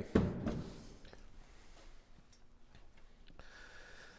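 Quiet room tone, with a short burst of noise at the very start and a couple of faint clicks.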